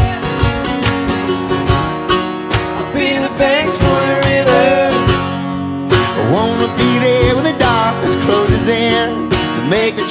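Live acoustic band playing: strummed acoustic guitars and a mandolin, with several voices singing together in harmony.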